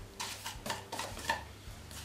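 A few light clicks and knocks of kitchenware as the plastic container that held the sesame seeds is taken away from the glass mixing bowl.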